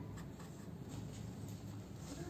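Faint scratching of a felt-tip pen writing a short label on paper.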